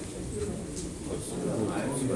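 Low, indistinct murmur of voices in a small room, getting louder near the end, with a few faint short clicks.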